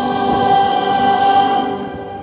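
Choir singing with musical accompaniment, holding a sustained chord played through large outdoor loudspeakers, fading away near the end.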